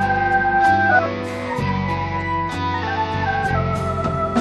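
Blues band playing an instrumental passage: a Hammond organ holds sustained chords over bass and drums, with repeated cymbal hits.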